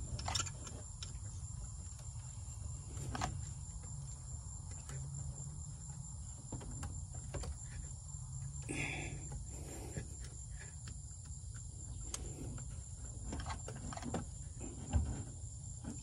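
Crickets trilling steadily in the background, a constant high tone. Over it come scattered light clicks and rubbing as a rubber hose is pushed onto the fitting of an oil catch can.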